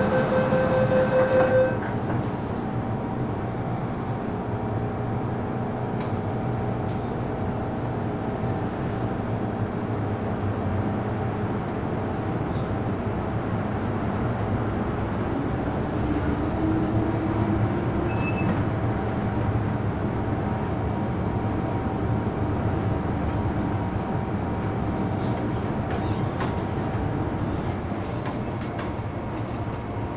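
MTR Island Line M-Train heard from inside the car: the door-closing warning beeps sound for the first two seconds or so, then the steady rumble of the train running as it pulls out, with a faint rising whine about halfway through.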